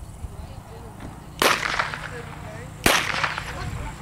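Two sharp loud cracks about a second and a half apart, each followed by a short echoing tail: blank pistol shots fired during the obedience heelwork, the gunfire test for the working dog's steadiness.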